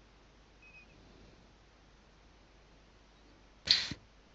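Near-silent room tone over an online call, broken near the end by one short, sharp rush of noise.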